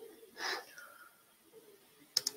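A single short, sharp breath into a close microphone, about half a second in, with a faint whistly tail as it ends.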